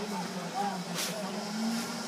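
Indistinct background voices of a busy restaurant, with a faint click about a second in.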